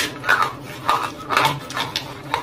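Close-miked crunching and chewing of a roasted clay lump: about four crisp crunches, roughly one every half second.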